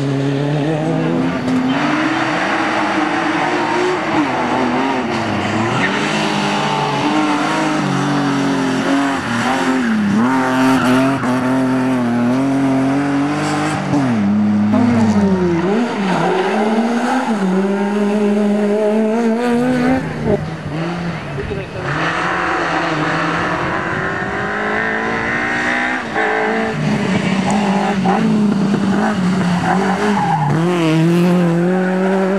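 Rally car engines revving hard, their pitch climbing and dropping repeatedly through gear changes and lifts as several cars in turn drive through bends.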